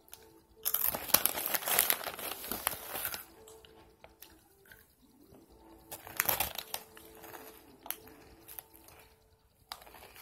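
Crinkling of a Cheetos Crunchy Flamin' Hot snack bag being handled, with crunching of the chips being eaten. The loudest crinkling comes from about a second in for two seconds, again briefly around six seconds and near the end.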